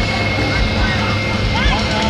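Loud, indistinct voices with short rising-and-falling cries, over a steady low rumble and hiss, with a thin steady whine throughout.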